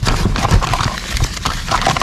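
Small hard objects clicking and knocking together, with paper and plastic packaging rustling, as a hand rummages through a bin of odds and ends; the knocks come irregularly, several a second.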